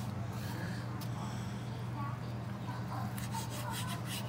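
A steady low hum, with faint rubbing as a burger is handled on a paper plate and a few light scrapes near the end.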